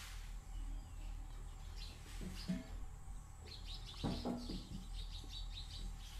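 Small birds chirping faintly, with a quick run of short high chirps in the second half. Two brief low sounds stand out about two and a half and four seconds in.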